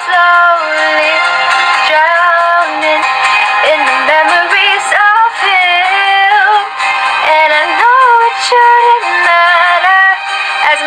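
A young woman singing a ballad, holding long notes and sliding between pitches.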